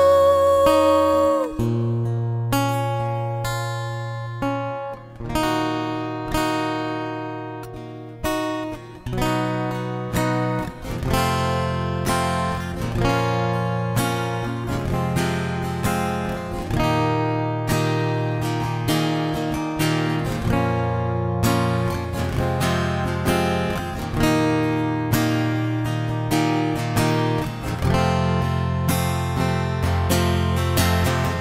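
Acoustic guitar playing plucked notes and chords in an instrumental passage of a mellow acoustic pop cover song. A long held note fades out about a second and a half in, just before the guitar passage.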